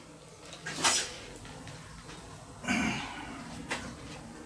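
Small metallic clinks and knocks from handling a plasma torch lead and its pilot arc wire terminal on a metal workbench: a sharp clink about a second in, then a heavier knock and a light click near the end.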